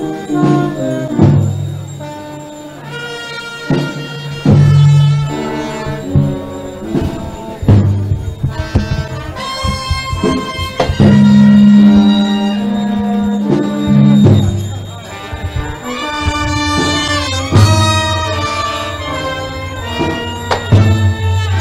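Brass band playing a slow funeral march, with long held notes and a loud, low sustained note from about eleven to fourteen seconds in.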